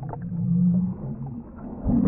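Muffled sound picked up underwater by a submerged camera: a low droning hum that fades after about a second, then a thud near the end.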